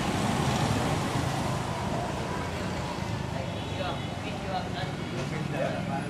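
Busy street ambience: steady traffic noise from passing engines, with people talking in the background.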